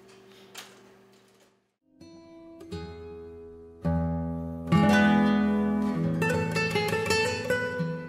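Faint steady room hum with a single click, then after a brief silence, music on plucked strings begins about two seconds in. It swells louder as deep bass notes come in around four seconds.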